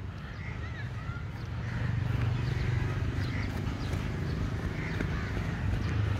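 Footsteps and handling rumble picked up by a smartphone's microphone while walking on grass, growing a little louder about two seconds in, with a few faint bird chirps.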